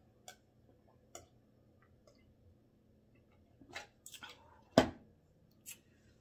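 A person drinking from a plastic cup: a few soft swallowing clicks about a second apart, then a cluster of short mouth sounds and one sharp, loud click a little before the end.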